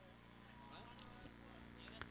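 Near silence, with faint voices slowly fading in.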